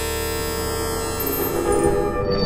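Experimental electronic drone, resonance-synthesised from a computer sound card's noise. A steady buzzing chord of stacked tones gives way, from about a second in, to shifting, pulsing resonant tones that swell and grow louder.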